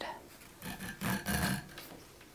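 A zipper slider being worked onto the teeth of a nylon zipper with the help of a fork, making a scraping, rasping rub in two short stretches about half a second and a second in.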